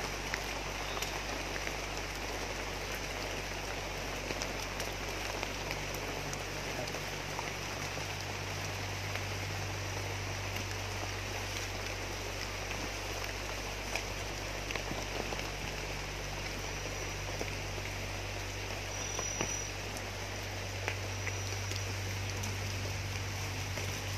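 Steady rain falling, an even hiss of drops, with a low steady hum underneath and a few faint clicks.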